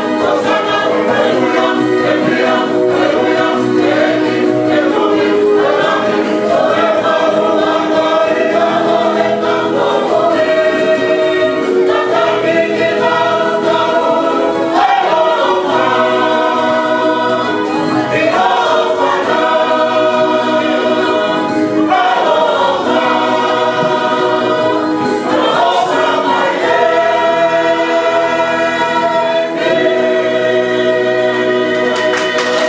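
Church choir singing a polotu hymn in full harmony, many voices holding long chords that shift steadily from one to the next.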